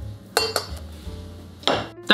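Two clinks of a ceramic pour-over dripper being set down onto a glass beaker, about half a second in and again near the end, over background music.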